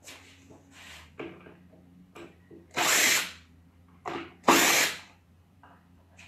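Makita cordless impact driver running in two short bursts, about three and four and a half seconds in, the second louder, as it backs rusty screws out of an old wooden table base. A few light knocks of the tool against the wood fall between the bursts.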